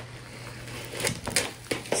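Packaging being handled by hand: a few soft clicks and rustles in the second half, after a quiet first second.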